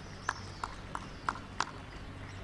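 Hard-soled shoes stepping on stone: five short, sharp, evenly spaced clicks, about three a second.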